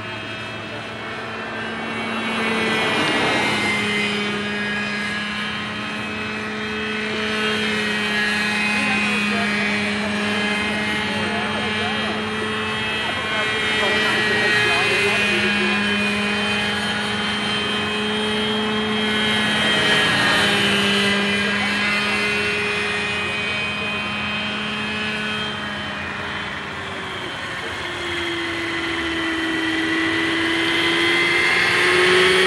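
Graupner Heli-Max 60 radio-controlled model helicopter in flight, its two-stroke glow engine and rotor running steadily. The sound swells and fades several times as the helicopter moves about, and the engine note drops in pitch near the end.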